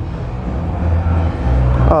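Emerson Designer ceiling fan with a K55-type motor running on medium speed: a steady rush of air from the spinning blades with a low, uneven rumble that swells and dips.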